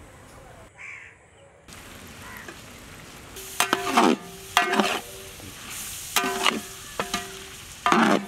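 A steel skimmer scrapes and knocks against a large metal pot as egg fried rice is stirred. From about three and a half seconds in, there is a run of quick strokes, and the pot rings with each one.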